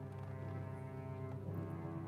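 A concert choir with instrumental accompaniment performing slow, held low chords, with the harmony changing about a second and a half in.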